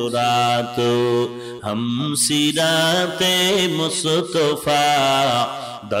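A man's voice chanting into a microphone in the melodic, sung delivery of a waz sermon. He holds long notes with wavering, ornamented pitch and breaks a few times for breath.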